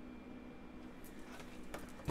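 Faint paper handling: a few soft rustles and clicks in the second half as the pages of a paperback guidebook are leafed through, over a low steady room hum.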